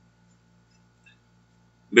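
Near silence in a pause of the narration: only a faint steady low hum of room tone, with the narrator's voice starting again at the very end.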